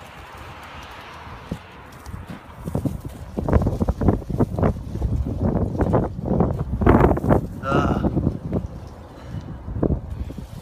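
Footsteps on wood-chip mulch and loose piled dirt: a run of uneven steps starting about three seconds in.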